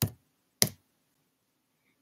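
Two sharp computer keyboard keystrokes about 0.6 s apart, the 'y' and Enter keys confirming a package install at a terminal prompt.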